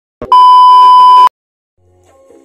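Television test-pattern tone: one loud, steady electronic beep lasting about a second, cut off sharply, with a brief click just before it.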